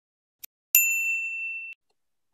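Subscribe-button animation sound effect: a faint mouse-style click, then a single bright bell ding that rings for about a second before cutting off.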